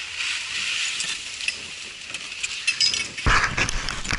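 Scraping and crunching of snow gear on packed snow by the ski-lift turnstiles, with scattered sharp clicks. A louder rush of noise starts about three seconds in as the wearer moves off.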